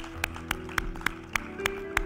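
Hands clapping in a steady rhythm, about four claps a second, over soft background music of held notes.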